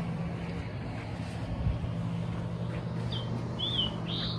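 Outdoor garden ambience: a steady low hum under faint background noise, with a small bird chirping twice near the end.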